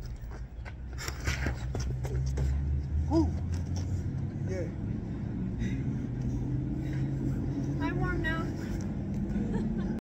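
A few sharp slaps of boxing gloves hitting focus mitts in the first two seconds, over a steady low rumble of passing road traffic.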